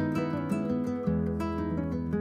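Background music led by acoustic guitar, with a change of the low notes about a second in.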